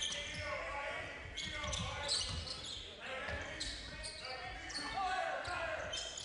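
Live court sound of a basketball game in a gym: a ball bouncing on the hardwood floor, with voices of players and spectators in the hall.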